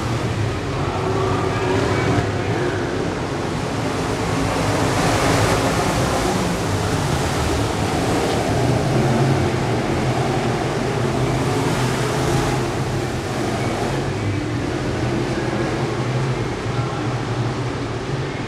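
A pack of IMCA Modified dirt-track race cars running at speed: a steady roar of many V8 engines that rises and falls a little as the cars come past.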